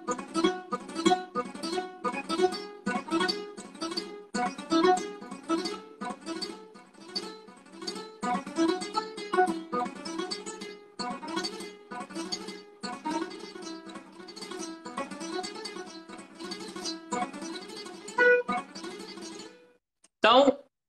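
Nylon-string classical guitar playing fast single-note scale runs, a long scale taken section by section as speed practice, with short breaks between the phrases.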